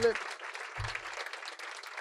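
Audience applauding, a light, even patter of clapping, with a short low thump about a second in.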